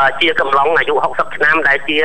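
Continuous news narration in Khmer, a single voice speaking without pause, with a narrow, radio-like sound.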